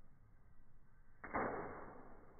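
A water balloon bursting against a person's chest: one sudden splash about a second in, fading quickly as the water sprays off.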